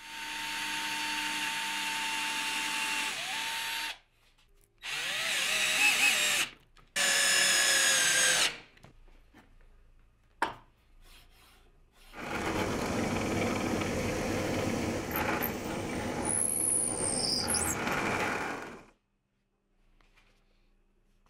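Cordless drill running in several separate bursts with short gaps between them. Its pitch dips near the end of the first run. The longest burst, about seven seconds in the second half, is rougher and noisier, like the bit boring into hardwood.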